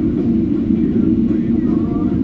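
Loud, steady rumble inside a jet airliner's cabin as it rolls along the runway after landing.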